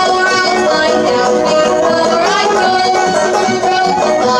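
An acoustic bluegrass string band playing: fiddle, banjo, mandolin and acoustic guitar together, with a sliding note in the melody a little past two seconds in.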